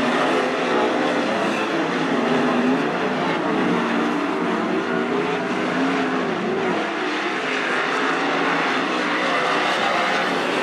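Several 410 sprint cars' 410-cubic-inch V8 engines racing on a dirt oval, their pitch rising and falling as the drivers lift and get back on the throttle through the turns.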